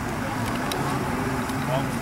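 Indistinct voices talking over a steady low rumble of outdoor background noise.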